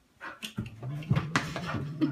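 A dog making a low, drawn-out vocal sound that starts about half a second in, with a few sharp knocks over it.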